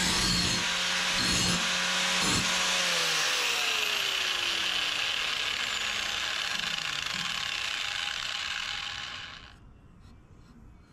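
Angle grinder grinding the edge of a steel lawn mower blade for sharpening, with a few short knocks as the disc meets the steel in the first three seconds. It is then switched off and spins down with a falling whine, dying away about nine and a half seconds in.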